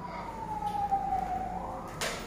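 A single siren-like wailing tone that glides slowly down in pitch for about a second and a half, then starts rising again near the end.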